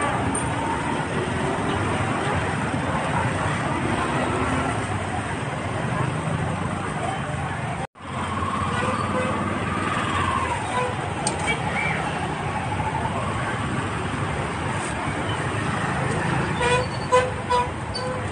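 Busy street ambience: steady traffic noise with background chatter of people, cut off for an instant about eight seconds in. Several short horn toots sound near the end.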